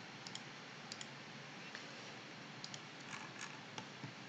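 Faint, scattered clicks of a computer mouse at irregular intervals over a low steady hiss.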